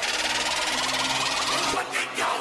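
Electronic intro sound effect: a dense, steady buzzing whoosh with a faint rising sweep, building up toward a music drop.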